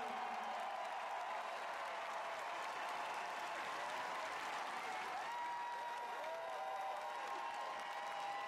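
Large arena crowd applauding, a steady even sound of many hands clapping, heard through a played-back broadcast.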